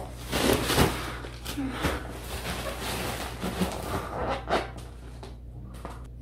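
Plastic wrapping on a taped gift package crinkling and rustling in irregular spurts as it is handled and pulled open, loudest near the start.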